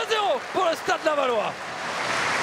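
A man's voice crying out excitedly in two long calls that rise then fall in pitch. About one and a half seconds in, it gives way to a stadium crowd cheering a goal.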